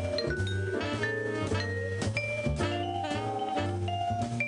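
Jazz ensemble playing, with vibraphone notes ringing over a bass line about two notes a second and light drums.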